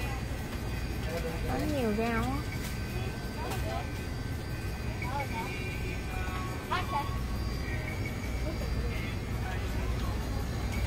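Grocery store background: a steady low hum, with brief faint snatches of voice or sung music over it a couple of seconds in and again around the middle.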